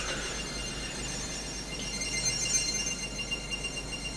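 High-pitched electronic alarm sound: several steady high tones sounding together with a fast flutter, loud enough to halt the talk.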